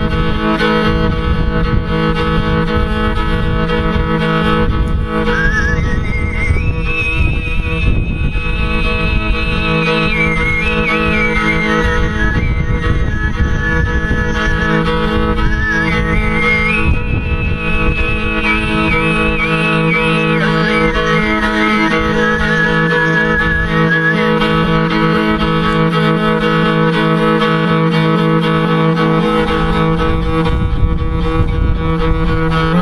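Mongolian throat singing (khöömei) over a bowed horsehead fiddle (morin khuur): a steady low drone voice rich in harmonics, with the fiddle droning along. About five seconds in, a high, whistle-like overtone melody enters, stepping up and down above the drone. It drops away a few seconds before the end.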